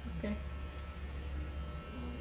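Corded electric hair clippers running against the back of a man's head, giving a steady low buzz.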